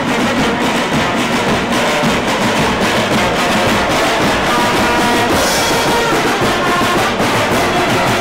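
Marching band playing on the move: snare and bass drums beating a steady march rhythm under brass and reed instruments such as trombones, sousaphone and saxophone.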